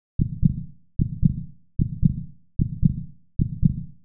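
Heartbeat: a steady lub-dub, each beat a pair of low thumps, repeating about 75 times a minute, five beats in all.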